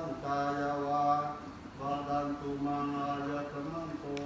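Thai Theravada Buddhist monks chanting in Pali, male voices held on nearly one pitch in long, level phrases with brief pauses for breath.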